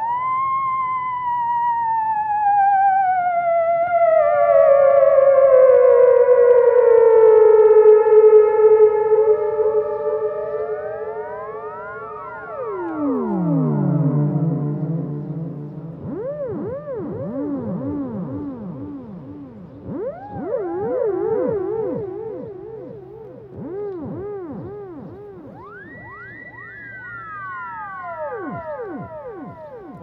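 Theremin played through a delay effect: a wailing tone swoops up at the start, then sinks slowly and holds a steady pitch. It then swoops down low and up again in repeated arcs, each glide echoed over and over by the delay. A high held note near the end falls away.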